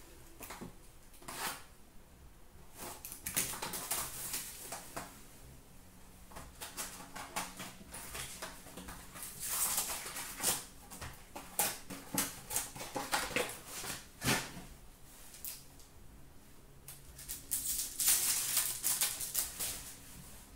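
Hands handling trading cards and packs on a glass counter: a run of light clicks and taps of card stock being sorted, with louder rustling of pack wrappers about ten seconds in and again near the end.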